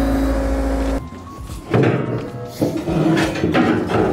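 John Deere 325G compact track loader's diesel engine running with a steady hum, cut off abruptly about a second in. Music follows.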